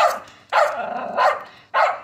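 Small long-haired dog barking several times in short, sharp bursts.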